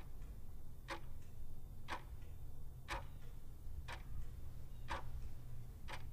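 Quiet, even ticking, one tick about every second, seven ticks in all over a faint steady hiss.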